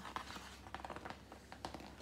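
A hardback picture book being handled, with faint rustling of its paper pages and a scatter of small clicks.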